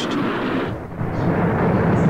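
Sound effect of a train running at speed: a loud, steady, deep rushing noise of wheels and carriages on the rails, dipping briefly under a second in.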